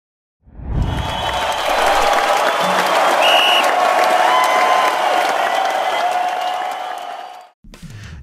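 Intro stinger: a low boom, then a stadium crowd cheering and applauding with music under it, and a short high tone about three seconds in. It fades out just before the end.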